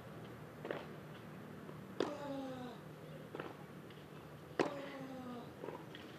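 A tennis rally on clay, the ball struck back and forth. Twice a close racket hit comes with the player's loud grunt that falls in pitch, and fainter hits from the far end of the court fall between them.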